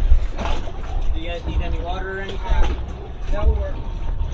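Steady low rumble of the boats idling side by side, with indistinct talk in the middle.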